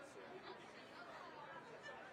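Faint, indistinct chatter of several people talking in the background.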